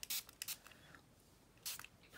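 Short hissing spritzes from a small pump spray bottle of alcohol: one at the start, a fainter one about half a second in, and a longer one near the end.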